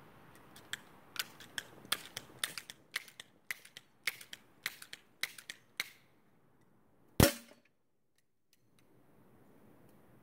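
A run of light, sharp clicks for about five seconds, then one loud pellet-gun shot: a sharp crack with brief ringing as the pellet strikes the paper target on the heavy metal bullet box.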